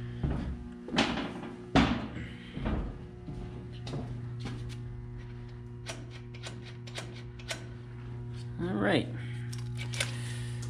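Metallic clicks and knocks from hand work on a diesel engine's fuel-injector linkages, the loudest knocks in the first two seconds, over a steady hum. A brief vocal sound near the end.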